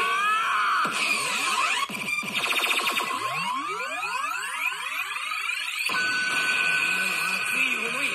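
Daiku no Gen-san pachinko machine playing electronic effect sounds during a screen animation: rising sweeps, a rapid run of short pulses about two seconds in, then a held high tone near the end, with a voice sample mixed in.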